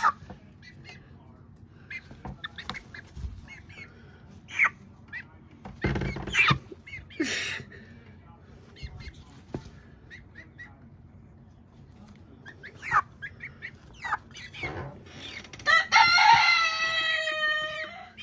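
Young chickens making short clucks and calls, with a few scuffling knocks, then near the end one long drawn-out call of about two seconds, falling slightly in pitch.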